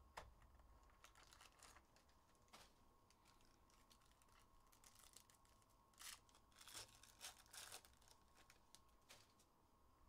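Faint crinkling and tearing of a trading card pack's wrapper being ripped open by hand, with a cluster of louder crackles about six to eight seconds in.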